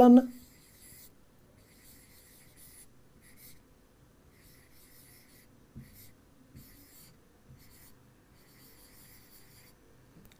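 Pen strokes on an interactive display screen as Sinhala words are handwritten: short, faint scratching strokes in broken runs, with a couple of light taps about six seconds in.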